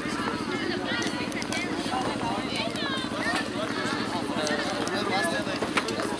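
Indistinct talking of people over a steady low rumble with an even pulse, like a nearby engine idling.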